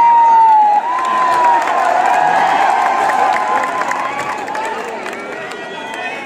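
Large crowd in grandstands cheering and shouting with many voices at once, a long held shout standing out above the noise in the first second and a half. The cheering eases off toward the end.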